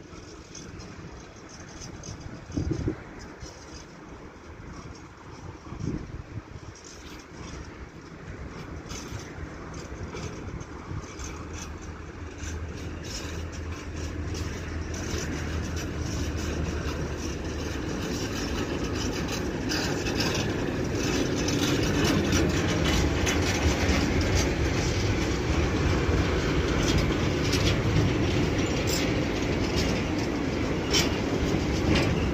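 Old Goša Zaes-z railway tank wagons rolling slowly past, wheels clattering on the rails and growing steadily louder as they come alongside, with a low steady drone underneath partway through. A few brief thumps come in the first few seconds.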